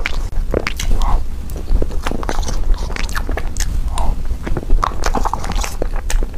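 Close-miked eating of soft chocolate dessert: irregular wet chewing, lip smacks and mouth clicks, with a metal spoon scraping a paper cup of cream, over a steady low hum.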